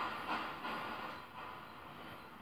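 Faint, steady hiss of background noise, with no distinct sound events.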